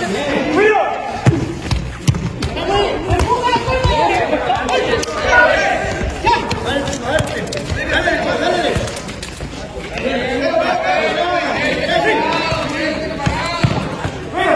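Players' and onlookers' voices shouting and talking over one another during play, with several sharp thuds of the ball being kicked on a concrete court.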